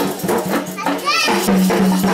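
Temple festival music: dense fast percussion over a steady low drone, mixed with the voices of a crowd and children. A short high rising call cuts through about a second in.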